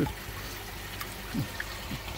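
Steady trickle and pour of running water, the circulating flow feeding the koi holding tanks.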